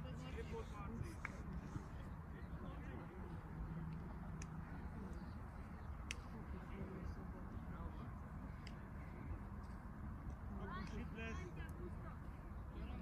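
Distant shouts and calls of players and spectators on an open football pitch over a low steady rumble, with a few sharp knocks; the calls are loudest near the end.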